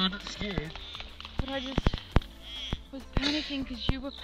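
Voices talking while swimming, broken by a scatter of sharp clicks and knocks of water splashing against a camera at the water's surface, loudest about two seconds in.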